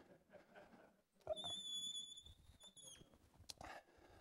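A single high-pitched squeak held on one steady pitch for about a second and a half, dipping slightly as it ends, then a short click.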